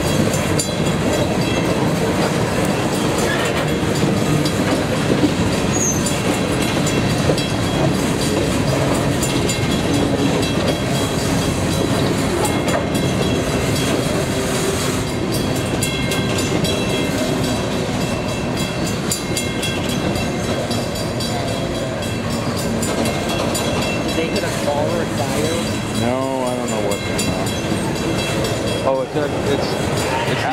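Open-top coal hopper cars of a freight train rolling past: a steady, loud rumble of wheels on rail with clatter over the joints, and thin steady high-pitched tones riding over it throughout.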